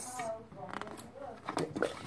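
Light clicks and scrapes of hands and a tool working on the opened DVD player's metal and plastic parts, with a brief murmur of a child's voice near the start.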